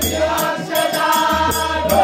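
A group of voices singing a song over a steady percussion beat, about four strokes a second.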